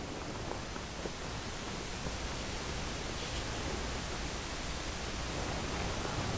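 Steady background hiss, the recording's room tone, with a faint low hum underneath.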